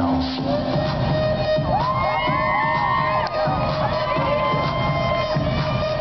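Dance music played over a sound system changes about half a second in to an electronic track with a steady beat, while the audience cheers and whoops.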